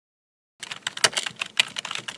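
Computer keyboard typing sound effect: rapid key clicks, about eight to ten a second, starting about half a second in.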